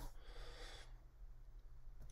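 Near silence: a faint steady low hum, with a soft breath-like hiss in the first second.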